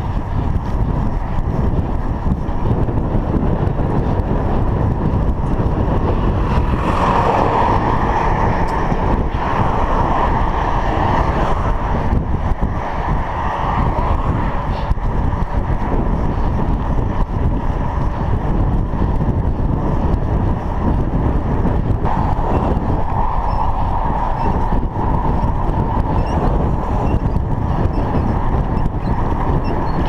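Wind buffeting a bicycle handlebar-mounted GoPro Hero 3 action camera's microphone while riding, mixed with tyre and road noise: a steady, loud rushing noise. A mid-pitched hum swells twice, once at about a quarter of the way in and again about three quarters of the way in.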